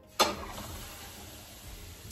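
Raw ground beef dropped into a hot skillet and starting to sizzle: a sudden hiss a moment in that settles into a steady sizzle, slowly fading.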